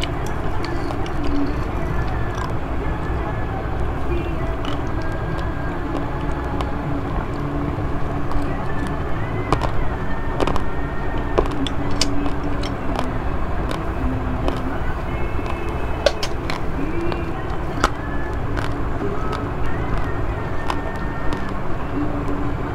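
Close-miked eating of rice mixed with Milo powder: a metal spoon clicking against the bowl now and then, with chewing, over a steady low background rumble.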